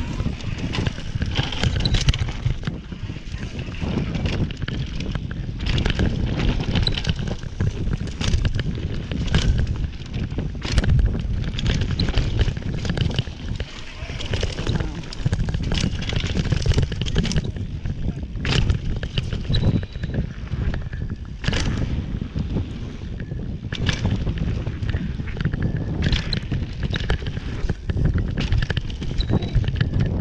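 Electric mountain bike descending a bumpy dirt downhill trail at speed: a steady rumble of tyres and wind buffeting the bar-mounted microphone, with frequent sharp knocks and clatters from the bike over bumps and jumps.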